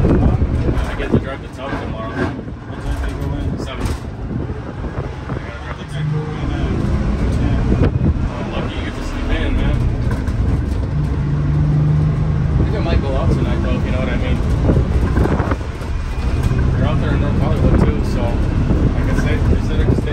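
The 1978 Crown school bus's Detroit Diesel 6-71, a naturally aspirated two-stroke diesel, running under way at road speed, heard from inside the cabin with road and wind noise. Its low drone strengthens several times.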